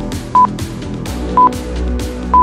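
Workout interval timer counting down the last seconds of an exercise interval: two short electronic beeps about a second apart, over background music with a steady beat.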